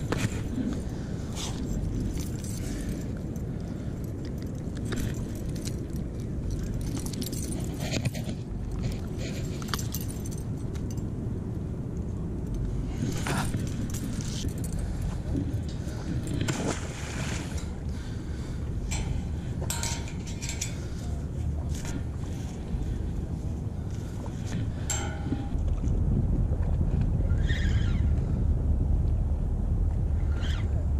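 Wind rumbling on a head-worn camera's microphone, heavier over the last few seconds, with scattered clicks and rustles from handling a hooked walleye, a lure and a spinning reel.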